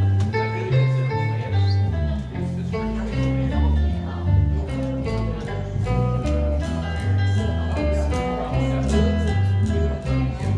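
Live country band playing an instrumental passage: picked electric guitar notes over a steady bass line that changes note about twice a second.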